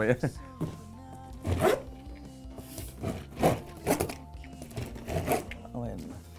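Quiet background music with steady held tones, with about seven short knocks and handling sounds scattered through it as objects are picked up and set down.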